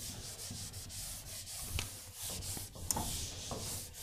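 Whiteboard eraser wiping across a whiteboard in repeated back-and-forth strokes, a steady rubbing swish.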